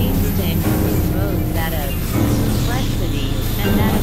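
Experimental synthesizer drones: dense, steady low tones held throughout, with short warbling, voice-like pitch glides sliding over them every second or so.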